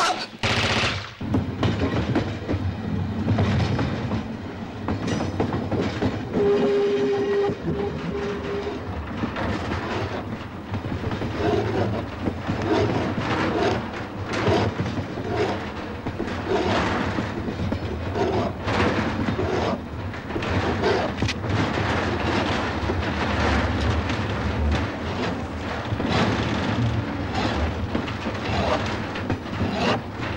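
Freight train running, its wagons rattling and clattering over the rails, with a short steady whistle-like tone about six seconds in.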